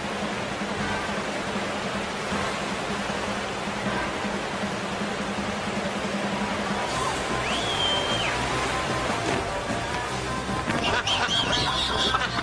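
FlowRider surf machine's sheet of water rushing steadily. A whistle-like tone rises, holds for about a second and falls about eight seconds in, and laughter comes in near the end.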